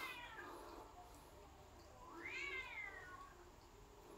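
Pet monkey calling in drawn-out, meow-like calls: the tail of one call at the very start, then one long call about two seconds in that rises and then falls in pitch.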